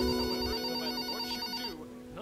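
A mobile phone ringing with a high electronic tone that cuts off about three-quarters of the way through, over soft background music.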